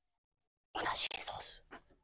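A person whispering briefly, a short hushed phrase of just under a second, starting about three quarters of a second in.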